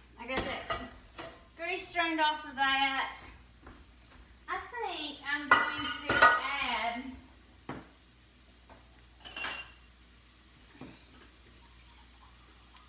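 Metal skillet and spoon knocking and clattering as the grease is drained off browned beef into a small bowl, mixed with indistinct voice sounds; the loudest clatter comes about six seconds in, with a few lighter knocks after.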